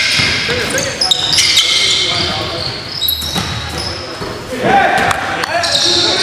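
Basketball being dribbled on a wooden gym floor during live play, with high sneaker squeaks and players' shouts, all echoing in the large hall.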